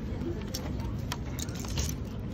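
Handling noise: light crinkling and clicks from a paper receipt and plastic tea bottles being shifted in the hand, most of it in the second half. Underneath is a steady low rumble.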